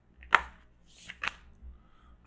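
Oracle cards being drawn off a deck by hand: one sharp card snap about a third of a second in, then two lighter clicks a little after one second.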